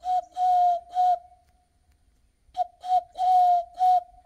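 A man blowing into his cupped hands, making a hollow whistle that imitates a bird's call. It comes as two matching phrases of four breathy notes on one steady pitch, with the third note of each held longest and a pause of about a second between the phrases.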